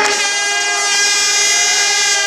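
A horn blowing one long, steady, unwavering note.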